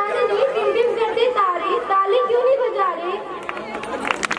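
Several high-pitched voices talking over one another, crowd chatter with no single clear speaker.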